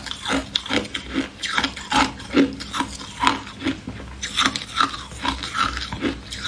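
Ice being chewed close to the microphone: a run of crisp crunches, about three a second, uneven in spacing.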